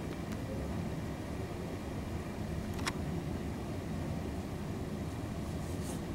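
A steady low rumble of background noise, with one sharp click about three seconds in.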